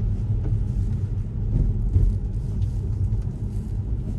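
Steady low road rumble of a Tesla's tyres on a wet road, heard inside the cabin.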